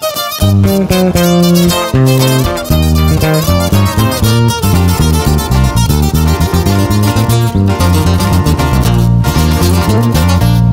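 Instrumental intro: a twelve-string acoustic guitar picking a quick melody over a deep electric bass line that comes in about half a second in.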